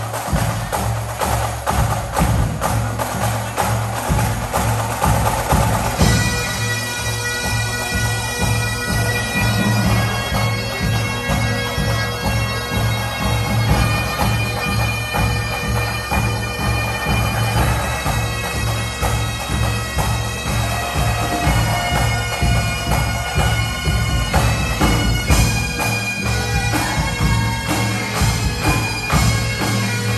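A band of Great Highland bagpipes playing a pop tune together over their steady low drone.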